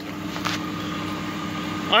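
2003 Ford Crown Victoria's 4.6-litre V8 idling steadily, heard from inside the cabin as an even hum, with a brief click about half a second in.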